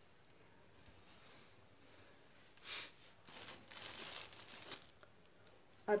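Rustling and light scuffing of a crocheted yarn piece being handled and laid flat on a cloth, with a few small clicks in the first second and the rustling loudest from about two and a half to five seconds in.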